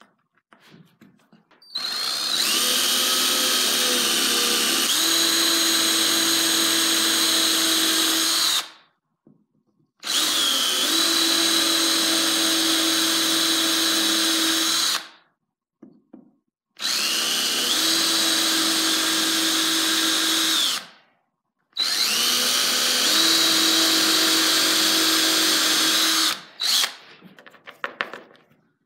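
DeWalt 18V cordless drill boring holes into a solid oak block, in four long runs with short pauses between them. Each run holds a steady motor whine that shifts in pitch partway through.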